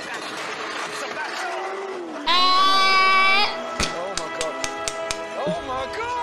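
Race-film soundtrack of a car engine held at high revs: a loud, steady, high-pitched note about two seconds in that lasts about a second and cuts off abruptly, with a film score underneath. A run of sharp clicks follows.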